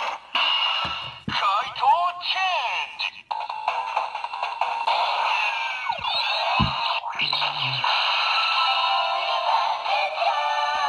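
Electronic sounds from a DX VS Changer toy gun's small built-in speaker, triggered with the Yellow Dial Fighter attached: a transformation jingle of music, gliding sound effects and a synthesized voice. It sounds thin, with almost no bass.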